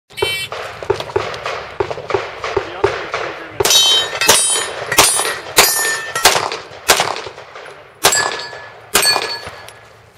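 A shot timer's electronic start beep, then a long string of rapid handgun shots. Through the second half many of the shots are followed by the clang and ring of steel plate targets being hit.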